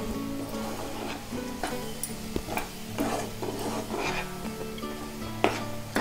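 A metal spoon stirring and scraping thick wheat halwa in a frying pan, with scattered clicks of the spoon on the pan and one sharper knock near the end, over a sizzle of the cooking mixture. Background music with steady low tones plays underneath.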